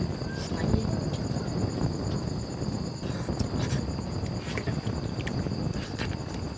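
Steady high-pitched insect chirping, with a fast pulsing trill above it, over a low background rumble and a few faint clicks.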